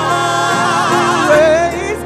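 Gospel vocal group singing in harmony: an upper voice runs a wavering, ornamented line over steadier held lower parts.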